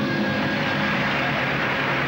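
Live audience applauding at the end of a swing number, starting about a third of a second in, with the band's last low held notes still sounding underneath.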